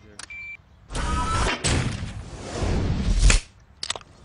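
A short beep, then a car engine starting and revving loudly for about two and a half seconds, with a brief rising whine near the start of the rev.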